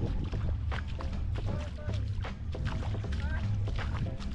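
Wind rumbling on the microphone over shallow lake water, with short splashy clicks and faint voices in the background.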